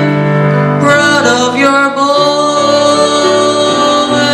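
A young male singer singing with grand piano accompaniment, holding one long note through the second half.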